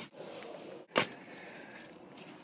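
Pick mattock levering under a pomegranate tree root in dug soil: soft scraping and rustling of dirt and roots, then one sharp crack about a second in.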